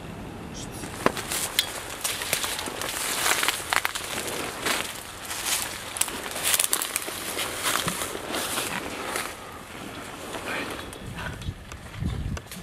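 Footsteps crunching through dry leaf litter and twigs, with brush and clothing rustling, as several people move through undergrowth. The crunching is busiest through the middle and eases near the end.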